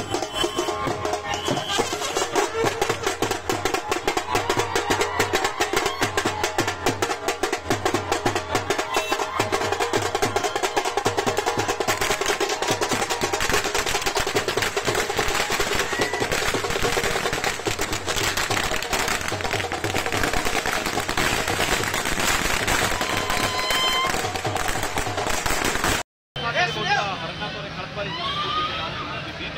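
Loud festive music with fast, dense drumming and voices over it. It breaks off abruptly near the end, and a quieter stretch of voices follows.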